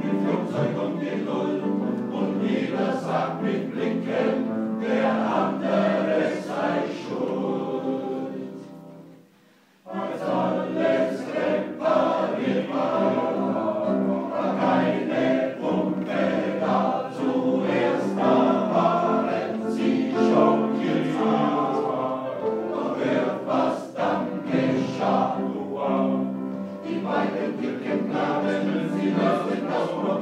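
Men's choir singing a blues number, accompanied by piano. About eight seconds in the sound fades away to a brief near-silent pause, then the choir comes straight back in at full strength.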